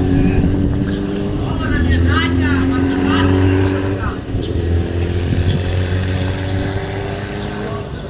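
A nearby engine idling steadily, its speed dipping and picking up briefly a couple of times, with voices in the background.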